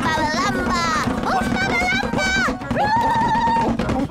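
Recorders played by a child, shrill wavering notes that slide up and down, then a long held note, over a steady low background drone.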